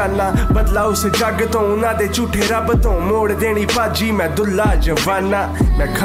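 Punjabi rap vocal over a hip hop beat with a steady heavy bass and kick drum.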